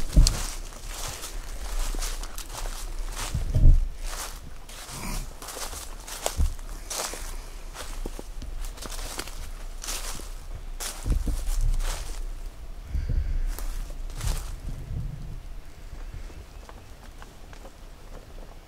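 Footsteps crunching through dry leaf litter on a forest floor, irregular, with brush rustling and low thumps along the way; the steps thin out in the last few seconds.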